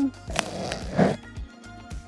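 Background music, with a couple of sharp clicks and a short rustle as small wire connectors are handled and pushed together.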